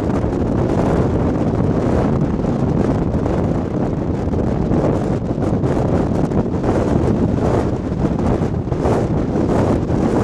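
Strong wind buffeting the camera's microphone in a steady, gusting rush.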